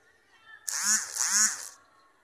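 A person's voice: two short, loud calls in quick succession, each rising and then falling in pitch.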